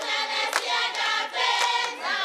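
A group of women singing together in chorus, with a sharp clap about once a second.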